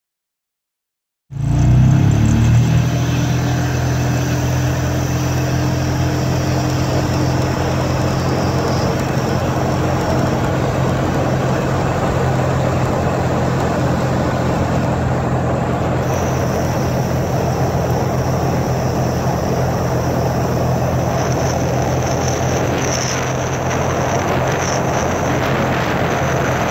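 Road vehicle driving along a dirt forest road: steady engine hum mixed with tyre and road noise. It starts abruptly about a second in and holds even throughout.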